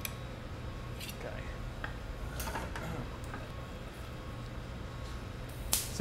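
Steady low hum of studio equipment, with a few faint clicks of metal tools on glass and pipe, and faint voices in the background.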